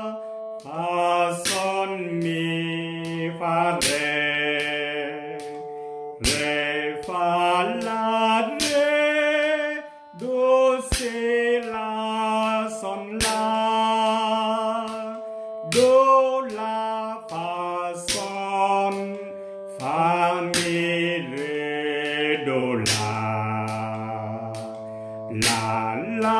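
A man sight-singing a bass-clef exercise in D minor, 3/4 time, note by note on solfège syllables. The notes step along about one a second, ending on a low note held for about three seconds.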